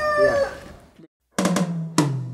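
A held, tonal sound fades out in the first half-second, then a brief silence. About a second and a half in, a drum fill on timbales begins: a few sharp strokes, each with a low ringing tone, opening the song.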